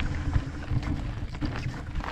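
E-mountain bike rolling fast down a dirt forest singletrail: a continuous low tyre and trail rumble with many short clicks and rattles from the bike, and wind on the microphone.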